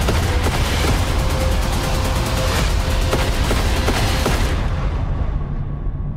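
Rapid gunfire, many shots close together, over dramatic trailer score music. The shots die away about four and a half seconds in.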